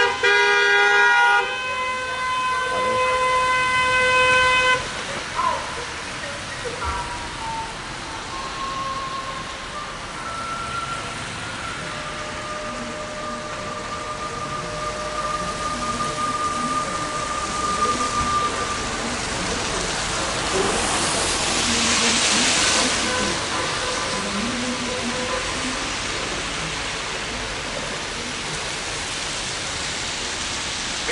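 Car horns honking from a slow convoy of cars, loud and held for the first few seconds, then fainter, longer horn notes further off over steady traffic noise. A louder hiss of noise swells about twenty seconds in.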